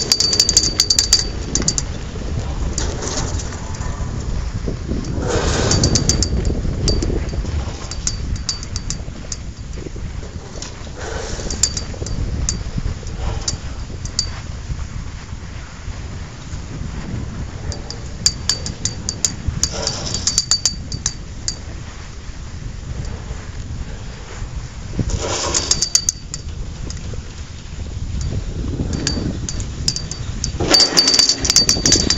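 Wind buffeting the microphone as a steady low rumble, broken several times by bursts of small metallic clicks and clinks.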